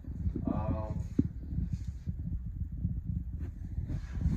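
Low knocking and rumbling movement noise, with a sharper click about a second in, as someone moves about and the camera is shifted; a brief voice is heard about half a second in.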